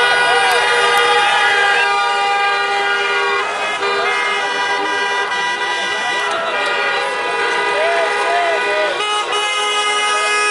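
Many car horns honking together in long overlapping blasts at different pitches, as a celebration, with a crowd shouting over them.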